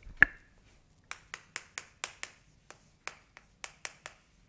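Chalk striking and tapping on a chalkboard as a short word is written: one sharp click about a quarter second in, then a quick run of about a dozen short taps, roughly four a second.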